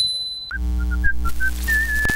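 Intro jingle: a whistled tune of short notes that ends on one long held note over a low bass. Before it comes a high steady ringing tone with a few clicks, which cuts off about half a second in.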